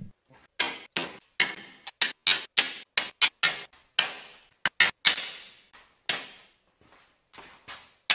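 Thin walnut bookmatch panels being set down one after another onto a crisscrossed stack on a table saw top: a quick, irregular run of about twenty sharp wooden clacks, sparser near the end.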